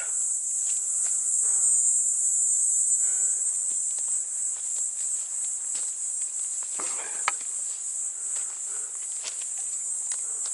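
Steady, high-pitched insect chorus running throughout. Footsteps crunch on dry pine needles and twigs over it, with a brief cluster about seven seconds in.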